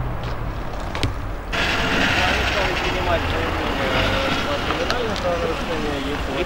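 A low steady rumble that cuts off abruptly about a second and a half in. Voices talking outdoors follow, over the same low background rumble.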